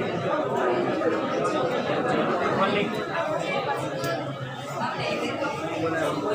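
Many people talking at once: indistinct, overlapping chatter of a room full of students.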